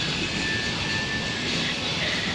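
Steady background noise of a large supermarket interior: an even, unbroken roar of ventilation and store din, with a faint steady high tone for about a second in the middle.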